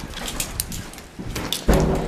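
Footsteps and rustling as people walk along a hallway, a run of short sharp clicks, with a heavy low thump near the end.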